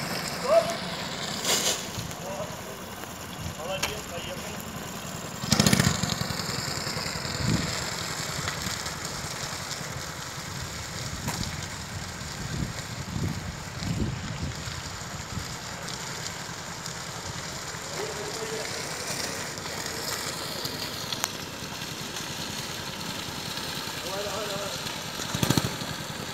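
Small racing kart's engine running as the kart drives slowly, with a loud burst of noise about six seconds in.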